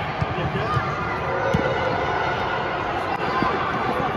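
Echoing noise of a youth football match in an indoor arena: distant shouts of players and spectators over a steady hall hum, with a couple of short knocks from the ball being kicked.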